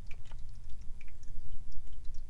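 Tarot cards being slid and nudged into place on a wooden table by hand: a few faint, short ticks, over a steady low hum.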